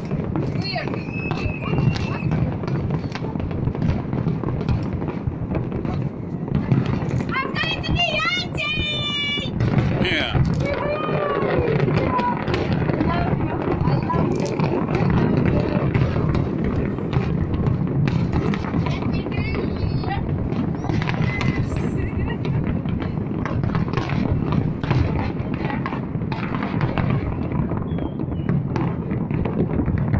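Large fireworks display: a continuous barrage of bangs and crackles from many shells bursting at once. High wavering whistles and voices come through about a third of the way in.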